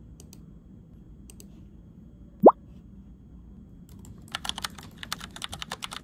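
A single short 'bloop' that rises quickly in pitch, the loudest sound, about two and a half seconds in. Near the end comes a quick run of typing on a laptop keyboard, lasting about a second and a half.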